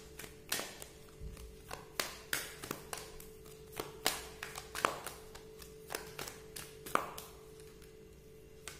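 Oracle card deck being shuffled and handled by hand: irregular sharp taps and flicks of cards, a few a second, over a faint steady tone.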